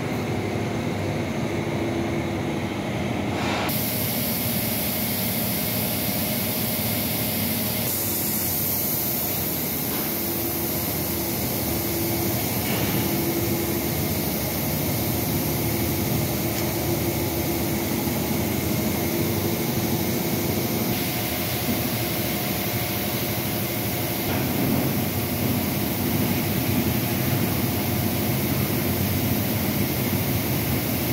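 Steady drone of running industrial machinery: a continuous rushing noise with a faint hum, holding an even level.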